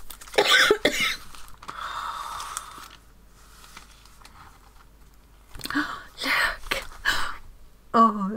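A woman coughing, two bouts of short coughs about five seconds apart, with a stretch of paper rustling between them as wrapping and waxy paper are handled.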